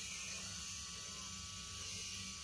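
Tattoo machine buzzing steadily at low power, set to about 6 volts.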